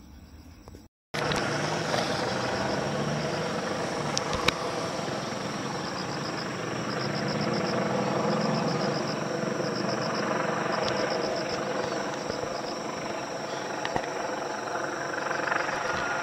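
Helicopter overhead, a steady rumble with a wavering low hum, while crickets chirp in rapid repeated pulses.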